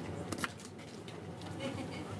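Faint, indistinct murmur of voices, with two short clicks about half a second in.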